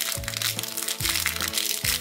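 Light background music with the crinkling of a plastic blind-bag wrapper being handled.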